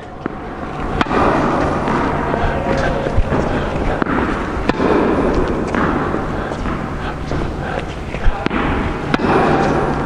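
Tennis balls struck by a racket and bouncing on an indoor hard court: a handful of sharp, irregularly spaced pops over a loud, steady background noise.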